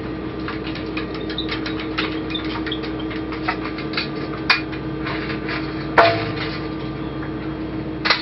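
Small clicks and knocks of hand tools and metal fasteners being worked on a metal shipping container lid, with a sharp knock about six seconds in the loudest, over the steady hum of the space station cabin's ventilation.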